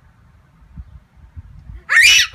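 A low background rumble, then near the end a toddler's sudden loud, high-pitched squeal of delight.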